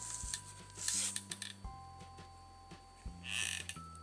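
Quiet background music of long held notes, the notes changing once partway through. Faint short rustles of hand work with a hot glue gun come about a second in and again near the end.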